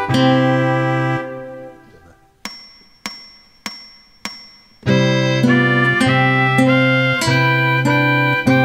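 Classical nylon-string guitar music in several layered parts ends a phrase about a second in and dies away. Then come four evenly spaced metronome clicks, about 0.6 s apart, counting in the next voice, and the layered guitar music starts again about five seconds in.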